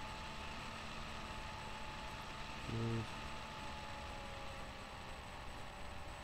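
Steady hiss and electrical hum from a webcam microphone, with one brief low hummed vocal sound from a man about three seconds in.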